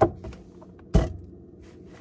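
Two short knocks about a second apart as a clear plastic display box is handled. The wind-up music box inside has run down and is silent.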